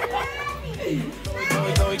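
Voices, a child's among them, over background music; a beat with strong drum hits comes in near the end.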